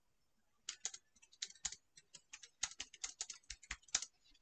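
Typing on a computer keyboard: a run of quick, irregular, faint keystrokes that begins a little under a second in.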